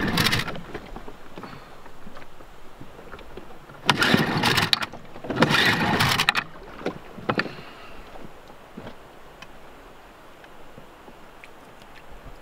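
Dinghy outboard motor being pull-started: three pulls on the starter cord, near the start, about four seconds in and about five to six seconds in. The engine turns over each time without catching; it won't start.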